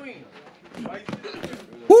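A few soft thuds of boxing-glove punches and faint voices of onlookers at a fight, then a man's loud 'woo!' with a falling pitch just before the end.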